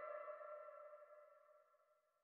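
Background electronic music ending: the ringing tones of its last chord fade out over about a second.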